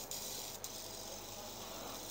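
Quiet stretch with a fidget spinner spinning softly on an open hand, and a light click about half a second in.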